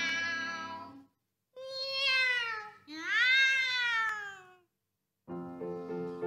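Two female singers in a playful comic duet, singing cat-like meows on long sliding notes: a held note, then two sweeping phrases that glide down and then up and down. Piano chords come in near the end.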